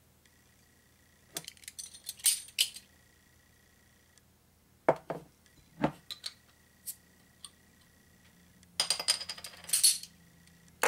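A pint glass being handled and set down on a bar counter: light clinks about a second and a half in, two solid knocks around five and six seconds, then a quick flurry of small clinks and clicks near the end.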